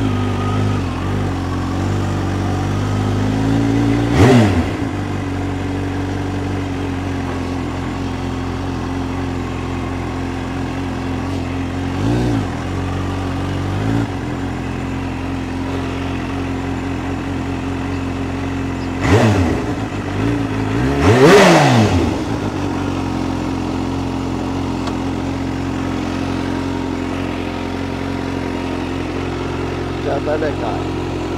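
Kawasaki Ninja H2 SX SE's supercharged inline-four running at low revs while being ridden gently. Five short throttle blips make the pitch rise and fall, the loudest a little past twenty seconds in.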